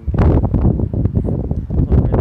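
Wind buffeting the microphone in loud, rough gusts.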